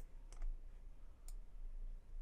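Two faint, short clicks of a computer mouse, one about a third of a second in and one a little past a second in, over a low steady electrical hum.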